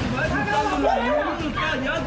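Speech only: raised, overlapping voices in a heated argument.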